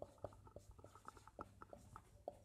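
Marker pen writing on a whiteboard: a faint, quick run of short squeaks and taps as the strokes are drawn.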